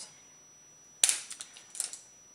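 A sharp click about a second in, then a few lighter clicks and rattles, as makeup tools and the eyeshadow palette are handled.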